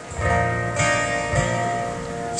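Live acoustic and electric guitars playing strummed chords in a country song, an instrumental moment with no singing.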